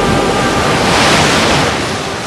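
Rushing sea water, like surf, that swells to a peak about a second in and then fades.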